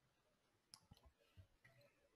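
Near silence: room tone with a faint click about three-quarters of a second in and a few weaker low thumps after it.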